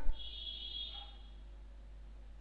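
A quiet pause with a low steady hum. A faint high tone fades out within about the first second.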